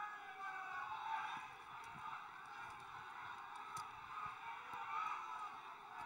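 Audience in a large hall whistling, faint: many overlapping whistles rising and falling together over a light crowd murmur.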